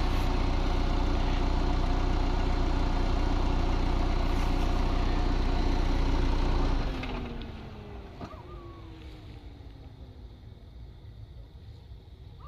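Car engine idling close by, then switched off about seven seconds in; a whine falls in pitch and fades over the next few seconds as it runs down, leaving quieter background with a couple of faint short chirps.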